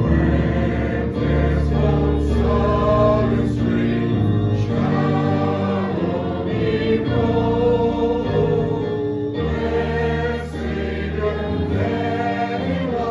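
A congregation singing a hymn together, with instrumental accompaniment holding steady low notes under the voices.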